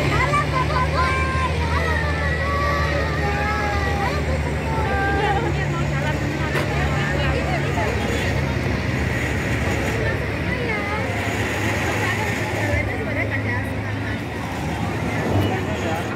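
Tracked armoured military vehicle's engine running with a steady low hum, under crowd chatter.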